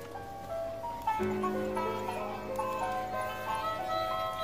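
Animated banjo-playing skeleton Halloween decoration playing a recorded tune through its small speaker, a quick melody of stepped notes.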